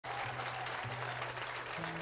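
Audience applauding, with a low held tone underneath that shifts pitch a few times.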